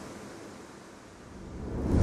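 Whoosh sound effects of a logo animation. The noisy tail of one dies away over the first second, and another whoosh swells up, rising in loudness near the end.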